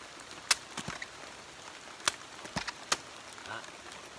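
A bolo knife cutting into an abaca stalk to lift the fibre strips (tuxying): a few sharp knocks and snaps, the loudest about half a second in, over a steady hiss.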